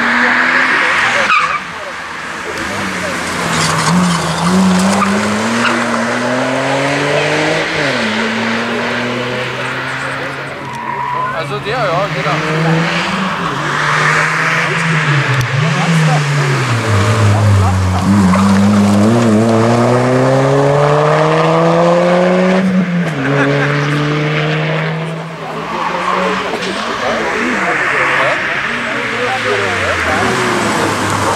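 Rally car engines driven hard through a tight bend one car after another, each revving up in rising steps and dropping sharply in pitch at each gear change or lift, over tyre noise on tarmac.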